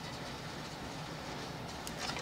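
Faint steady hum and hiss, with a brief faint crackle near the end as steel wool carrying electric current begins to spark.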